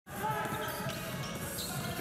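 Basketball being dribbled on a hardwood court: a run of quick low bounces, with faint voices behind.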